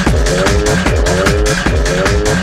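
Fast, hard techno from a DJ mix: a pounding kick drum with a repeating riff of rising, sliding synth notes. The kick comes back in at the very start after a short break.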